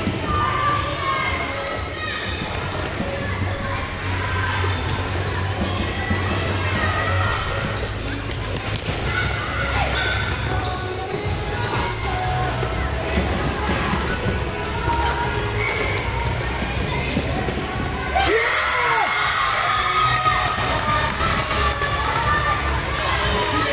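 Floorball play in a reverberant sports hall: repeated clacks of plastic sticks and ball and players' steps on the court, over a steady din of children's voices and shouts that grow louder near the end.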